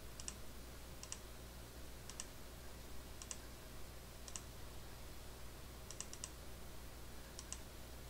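Faint, slow key taps on a tablet's touchscreen keyboard as a word is typed one letter at a time, each a quick double click, about one a second with a pause in the middle. A low steady hum lies under them.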